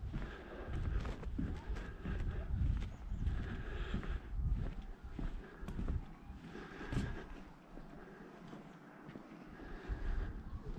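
Footsteps on boardwalk decking, an irregular walking pace of knocks, with a low rumbling noise that eases off about seven seconds in.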